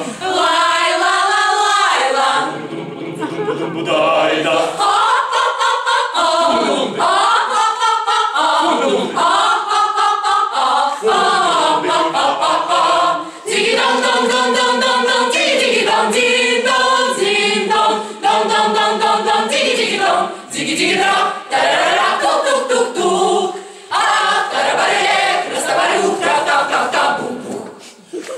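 Mixed choir of women's and men's voices singing together a cappella, in phrases broken by a few brief pauses for breath.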